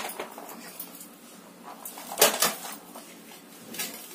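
Household items being handled and set down: a sharp knock about two seconds in, a softer one near the end, with light rustling between.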